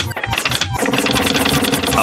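Cartoon sound effect of a small propeller motor whirring with a fast rattle as a character's feet spin like a rotor, a steady hum joining about a second in.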